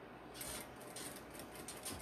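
Industrial sewing machine stitching slowly through a zipper, binding and plastic, heard as a faint series of light, slightly irregular ticks with a soft rustle.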